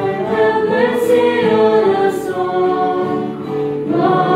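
A group of voices singing a slow liturgical chant in unison, with long held notes that step up and down in pitch.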